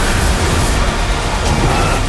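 Loud, sustained rumbling noise of trailer sound design, dense from deep rumble up to hiss with no clear tone, like a storm-like whoosh under a glitch transition.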